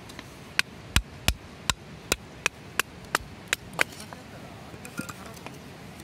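Knife chopping into thin wooden slats to split kindling for a campfire: a series of about ten sharp wooden knocks, roughly three a second, followed by a few faint ticks near the end.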